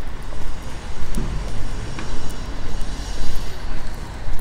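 Low, uneven rumble of city street traffic.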